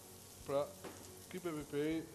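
Strips of red and green bell pepper sizzling steadily in a frying pan as they sauté. Over it, a voice sounds briefly twice, about half a second in and again near the end; these are the loudest sounds.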